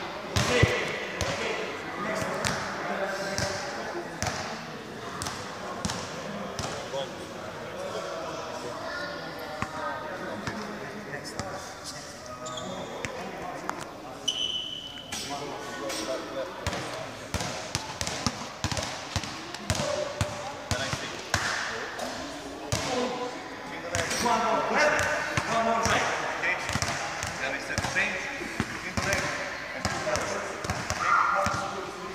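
Several basketballs being bounced on a sports-hall floor in irregular, overlapping dribbles, with people's voices talking in the background.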